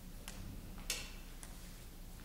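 Three faint sharp clicks, about half a second apart with the middle one loudest, over quiet room hum.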